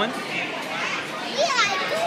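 Speech: a young child's high voice, with a rising-and-falling call about a second and a half in, over other voices.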